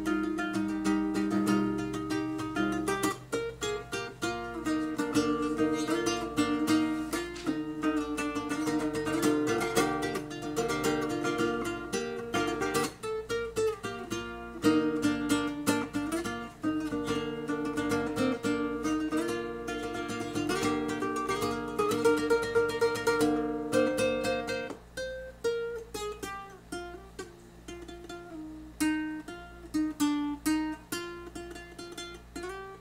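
Cheap classical guitar played solo: picked notes and chord patterns, changing chord every second or two. It becomes quieter and sparser about five seconds before the end.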